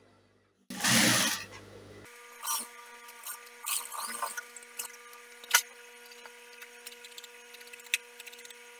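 Sewing machine stitching in one short burst about a second in. After it come scattered clicks and rustles of fabric being handled at the machine, the loudest a sharp click midway, over a low steady hum.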